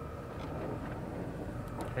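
Power window of a 1984 GMC Caballero running as the door glass moves, a faint steady hum inside the cabin, with a couple of light clicks near the end.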